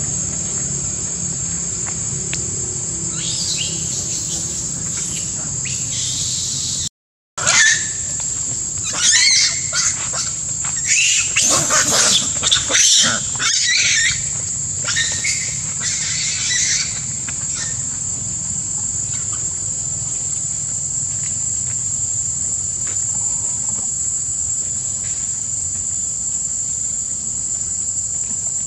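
A steady, high-pitched drone of insects runs throughout. After a brief dropout about seven seconds in, macaques give a run of loud, shrill screams for about nine seconds.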